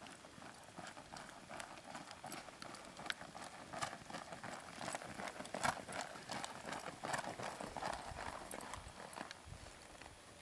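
Hoofbeats of a young sorrel filly under saddle on a dirt arena, an irregular run of soft clops that grows loudest around the middle as she passes close, then fades as she moves off.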